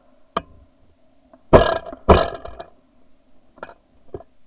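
Two shotgun shots fired in quick succession, about half a second apart, starting about a second and a half in. Each is a loud blast with a short ringing tail, recorded at point-blank range from a camera mounted on the gun.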